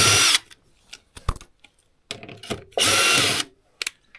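Cordless DeWalt drill-driver spinning a battery terminal bolt in two short bursts of about half a second each, one right at the start and one about three seconds in. A few light clicks of tool handling come between them.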